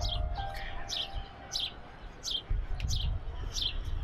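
A bird chirping over and over, each call a short high chirp falling in pitch, repeated steadily one or two times a second, over a low steady outdoor rumble.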